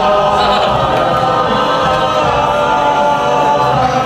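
A group of students singing together in harmony, holding long notes.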